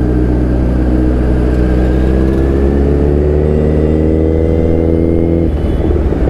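Kawasaki Z900 inline-four engine pulling in gear, its pitch climbing steadily for a few seconds, then dropping off suddenly as the throttle is shut about five and a half seconds in, over a steady low rumble of riding noise.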